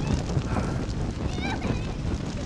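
A building fire burning with a steady rumble and dense crackling. About one and a half seconds in, a brief high-pitched cry.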